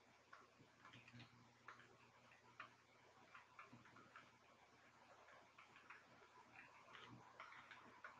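Near silence with faint, irregular ticks and light scratches of a stylus on a tablet screen while drawing.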